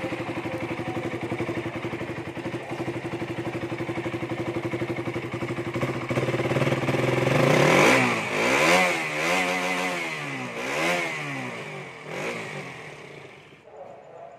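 KTM RC 200's single-cylinder engine idling steadily, now running on a replacement fuel pump after refusing to start with a dead one. About six seconds in it is revved up, then blipped several times before it dies away near the end.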